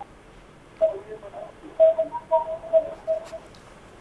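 A faint, muffled voice coming over a telephone line, thin and cut off above the phone band, in short broken stretches: a caller's line being connected.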